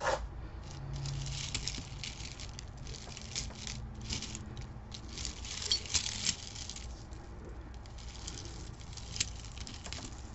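Metal necklace chains jingling and clinking as they are handled, a run of small rattles and clicks.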